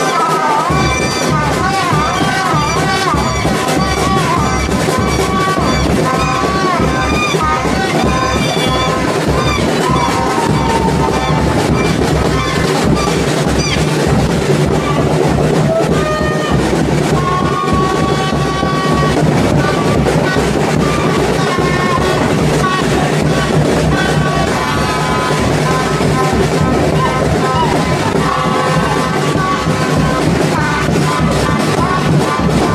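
Supporters' street band of drums and plastic horns playing a steady, driving beat, with a crowd singing, shouting and clapping along.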